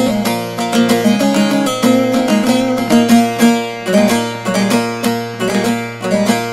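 Instrumental break in a Turkish folk song: a bağlama (saz) plays a quick run of plucked notes over a steady low drone.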